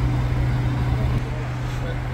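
Street ambience: a steady low hum under a haze of traffic noise.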